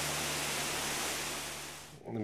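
Water from fountain jets splashing as a steady rushing noise, fading out near the end.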